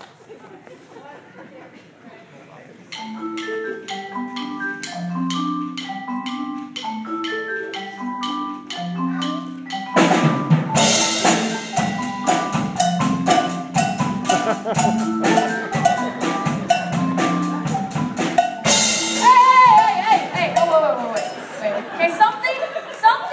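Percussion ensemble of marimbas and a drum kit. The marimbas start a repeating melodic pattern about three seconds in. The drum kit joins at about ten seconds, making it louder and denser, with a cymbal crash near the end and voices briefly heard over the music.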